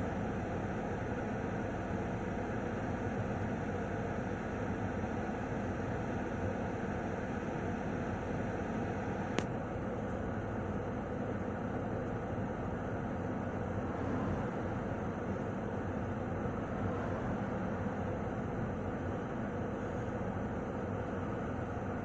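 Steady road and engine noise of a moving car, heard from inside, with one brief click about nine seconds in.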